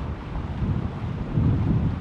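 Wind buffeting the microphone: an irregular low rumble that swells about a second and a half in.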